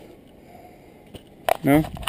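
Quiet outdoor background with a couple of faint clicks, then a man says a single short word near the end.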